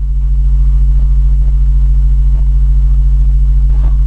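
Steady, loud low electrical hum, mains hum picked up by the recording setup, with its evenly spaced overtones.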